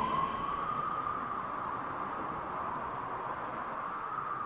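A single whistling tone, rising a little and then slowly sliding down, over a faint hiss: a falling-whistle sound effect for the pickup truck's plunge into the quarry.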